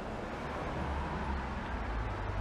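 Steady road traffic on a city street: a continuous low hum of passing vehicles.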